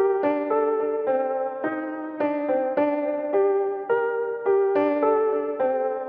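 Instrumental music: a piano-like keyboard playing struck chords, about two a second, each fading before the next.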